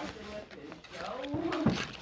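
Indistinct voices with no clear words, including a short pitched vocal sound that bends up and down, loudest towards the end.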